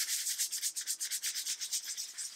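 Fingers scratching back and forth over a stiff stuck-on decal print on a cotton t-shirt, a fast run of many dry, scratchy strokes a second.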